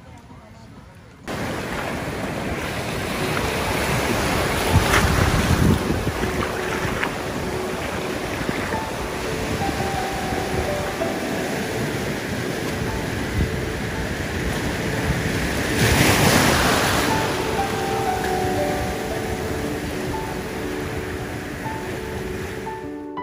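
Surf washing against rocks and up the beach, with wind buffeting the microphone. It starts suddenly about a second in and grows louder twice, around five seconds in and again past the middle. Soft background music comes in underneath about halfway through.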